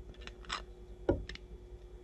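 A handful of light, scattered clicks and taps of 3D-printed ABS plastic parts being handled and fitted together. The clearest come about half a second and a second in.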